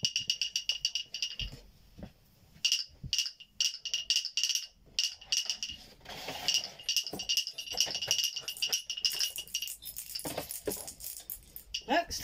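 A small jingle bell rattling inside a wooden clacker as it is shaken. It comes in several bursts of quick jingling and clicking with short pauses between, the longest a little after the middle.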